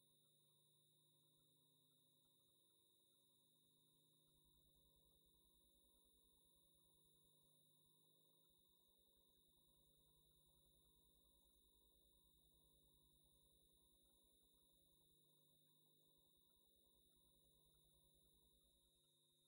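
Near silence, with only very faint steady tones.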